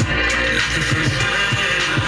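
Pop music from an FM radio broadcast, playing through small desktop computer speakers.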